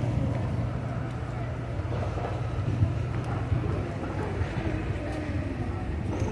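Outdoor street ambience: a steady low hum under a background haze, with faint voices.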